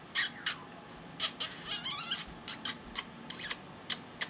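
A man's breathy, near-silent laughter: a string of short, irregular hissing puffs of breath, thickest around two seconds in.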